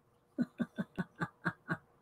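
A woman laughing quietly: a quick run of about seven short chuckles, each dropping in pitch, lasting just over a second.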